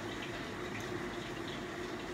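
Steady room tone: a low, even hum and hiss with no distinct sounds.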